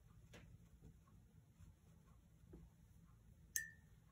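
Near silence with a few faint taps of a small watercolour brush on paper, then one sharp clink with a short ring about three and a half seconds in.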